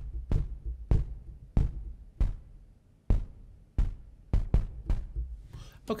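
Synthesized kick drum from the Retrologue 2 software synthesizer, with a little reverb, played about ten times. Each hit is a deep boom with a short click on top. The hits come about every 0.6 seconds at first, then faster and less evenly.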